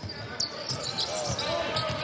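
A basketball being dribbled on a hardwood court, in the echo of an indoor arena, with a faint voice about a second in.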